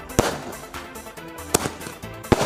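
Two aerial firework shells bursting with sharp bangs just over a second apart, from a Penta Sky Flash multi-shot aerial, over background music.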